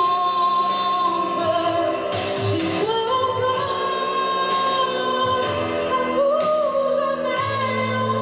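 A woman singing live into a handheld microphone over instrumental accompaniment, holding long sustained notes.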